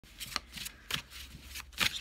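A deck of tarot cards being shuffled by hand: soft sliding strokes broken by sharp card snaps, about three of them, the loudest near the end.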